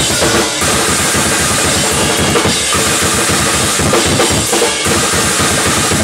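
Acoustic drum kit played hard and fast: dense, rapid bass drum strokes and snare hits under a continuous cymbal wash, with no let-up.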